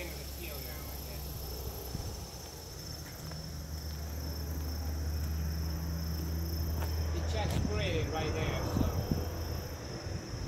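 Distant crop-duster airplane engine, a low steady drone that swells through the middle and then eases. Crickets chirr steadily in the background.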